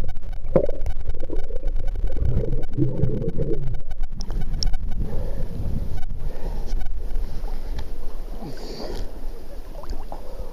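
Muffled, low water rumble picked up by a waterproof camera's microphone held underwater. About four seconds in, the camera breaks the surface and the sound opens out into seawater sloshing and small waves lapping right against the microphone.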